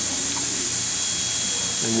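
Steady background hiss, strongest in the high range, with a faint thin high tone joining about halfway through.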